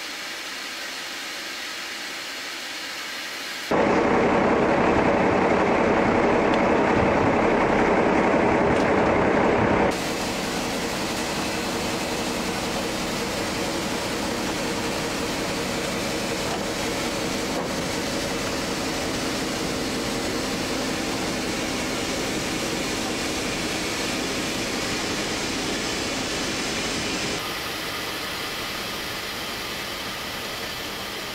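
Steady rushing background noise with no clear pitch. It jumps louder about four seconds in, drops back about ten seconds in, and steps down slightly near the end.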